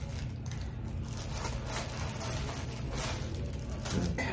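Soft scraping and light clicks of small items being handled on a vanity, over a steady low hum.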